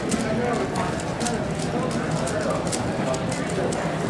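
Quick, irregular clicking of a 3x3 puzzle cube being turned one-handed, over a steady background of many people chattering.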